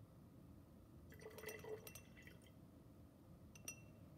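Sulfuric acid poured from a glass graduated cylinder into water in a glass Erlenmeyer flask: a faint, brief trickle about a second in. Near the end comes a single light glass clink.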